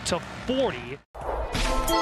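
A sports commentator's voice over faint arena crowd noise, cut off abruptly about a second in. After a moment's silence a swelling transition effect and outro music start.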